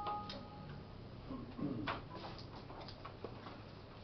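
A short two-tone computer alert chime as a warning dialog pops up on a laptop, followed by a scatter of sharp clicks and taps from the laptop's keys and touchpad being worked.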